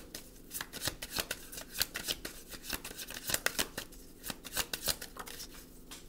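Tarot cards being shuffled by hand: a quick, uneven run of short card clicks and flutters that thins out near the end.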